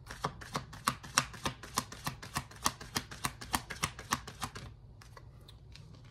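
Tarot deck shuffled by hand: a quick run of card clicks, about five a second, that stops about three-quarters of the way through.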